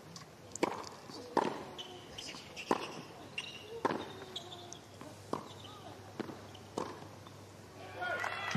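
Tennis doubles rally on a hard court: a serve followed by racket strikes and ball bounces, about seven sharp hits spaced roughly a second apart at an irregular pace.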